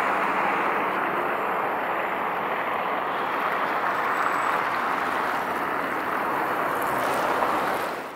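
Steady, even rushing noise of outdoor city ambience by the river, with no distinct events, fading out right at the end.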